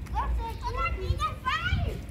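A young child's high-pitched voice: a few short calls or babbles that rise and fall in pitch, over a low steady rumble.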